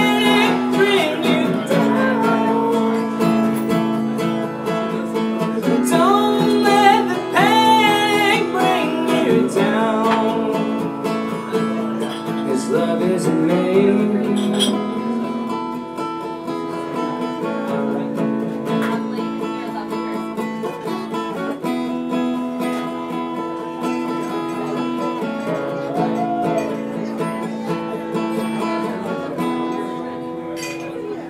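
Acoustic guitar played in steady chords with a man's singing voice coming in at intervals. The sound grows gradually quieter as the song winds down.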